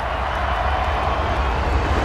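A dense wash of noise over deep bass, growing slightly louder, at the close of a pop song's recording.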